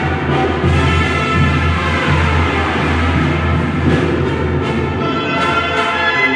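Music from a band with brass and drums, playing steadily over a sustained bass.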